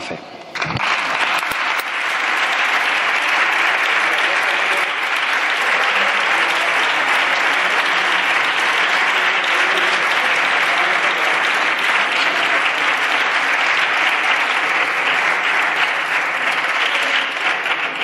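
Applause from a group of parliamentary deputies, many hands clapping together. It begins within the first second and holds at a steady level throughout.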